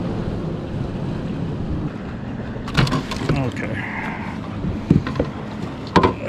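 Steady low rumble of wind and water around a fishing kayak, with a few sharp knocks from handling on the kayak about three and five seconds in, and another at the end, as the fish comes off the measuring board.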